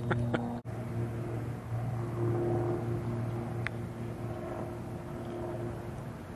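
A steady, low engine hum runs on with outdoor ambience, broken by a brief cut about half a second in.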